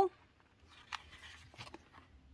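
Faint rustle of a paper sticker-book page being turned over, with a couple of soft taps about a second in and again near the end.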